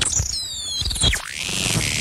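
Electronic sound effects bridging two records in a DJ mix: high squealing tones that step downward, then a whoosh of noise that swells and fades as the next electronic track's beat comes in.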